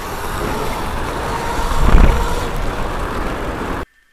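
Ride noise of a DIY electric mountainboard rolling fast over a dirt track: wind on the board-mounted microphone and tyre rumble, swelling to a louder rumble about halfway through. The sound cuts off suddenly just before the end.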